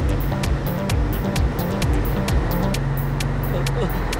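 Electronic background music with a fast, steady beat, laid over the running engine of a cartoon truck as it drives along.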